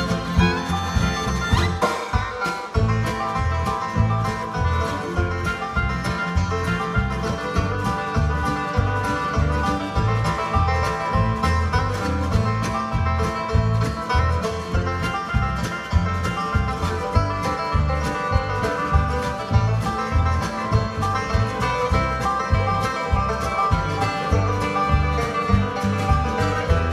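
Live bluegrass band playing an instrumental passage: banjo picking, fiddle and acoustic guitar over upright bass, with a steady, even beat.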